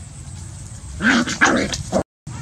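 Puppies play-fighting, one giving a quick run of short yaps and growls starting about a second in.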